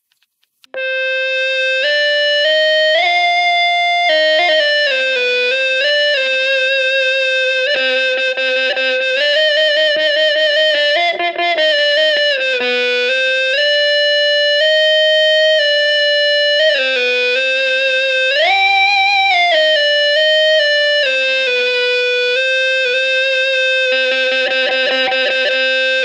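Electric guitar sounded by an EBow in harmonic mode, giving smooth, bowed-like infinite-sustain notes with the octave-up harmonic. The notes are joined legato, changing pitch in steps through hammer-ons and pull-offs, with a few slides up and back down. They start about a second in and cut off sharply at the end.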